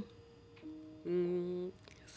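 A woman's closed-mouth "hmm" hum in two held notes: a faint short one, then a louder, lower one lasting just over half a second. It is a wordless reply to a question.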